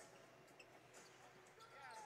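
Very faint basketball dribbles on a hardwood court over quiet arena background noise.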